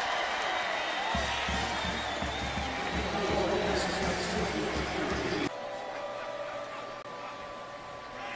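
Stadium crowd noise mixed with band music as the home crowd reacts to a touchdown, loud with a steady low pulse. It cuts off abruptly about five and a half seconds in to a quieter crowd murmur with a few steady tones.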